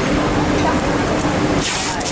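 Steady machinery and ventilation noise of a garment factory floor: a loud, even hiss with a low hum under it. A brief louder swish near the end.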